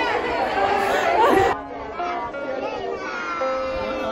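Girls' voices talking over one another, with background music. The voices cut off abruptly about a second and a half in, and the music carries on alone.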